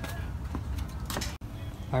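A couple of light knocks with rustling from handling a freshly removed plastic radiator fan shroud, cut off abruptly about halfway through.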